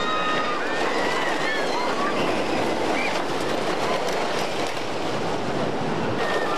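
Wooden roller coaster train, the Grand National racing coaster, running along its track: a steady loud rattle of wheels on the wooden track, with riders' voices calling out over it.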